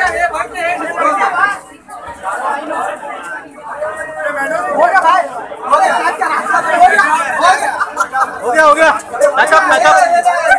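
Crowd chatter at close range: many voices talking over one another at once, loud and unbroken.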